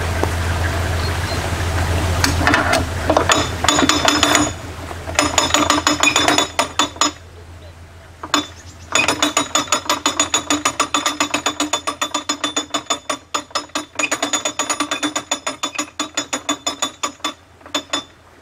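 Canal lock gate paddle gear being wound up with a windlass, its ratchet pawl clicking rapidly over the gear teeth, about four clicks a second. The clicking comes in two long runs with a short pause between, as the paddle is raised to let water out of the lock.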